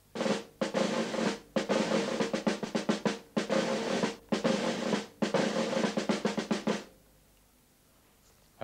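A drum beaten quickly with sticks, in runs of rapid strokes and short rolls with brief pauses between them, stopping about seven seconds in.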